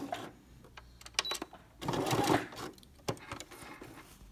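Domestic sewing machine running in a short burst about two seconds in, with sharp mechanical clicks before and after: backstitching to lock the end of a seam in felt.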